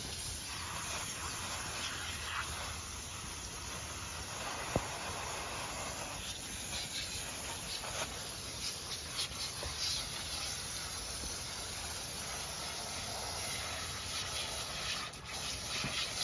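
Garden hose spraying water onto a golden retriever's wet coat and the deck below, a steady hiss of spray with small splashes.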